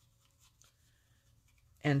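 Faint, scratchy brushing of a Stampin' Up! blending brush swirling ink onto die-cut cardstock petals. A woman's voice comes in near the end.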